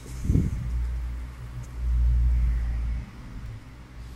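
A deep low rumble with a short thump about a third of a second in. It grows louder for about a second near the middle, then cuts off suddenly.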